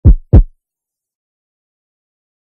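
Two loud, deep thumps about a third of a second apart, a heartbeat-like intro sound effect.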